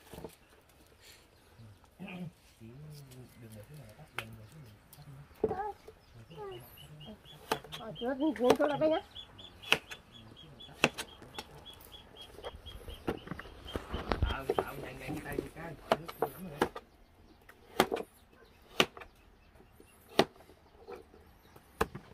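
Faint talk and chickens clucking, with scattered sharp clicks. A run of high, even ticks, about four a second, comes from around six to twelve seconds in.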